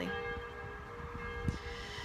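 A steady hum made of several fixed tones over a low, uneven rumble, with a soft click about one and a half seconds in.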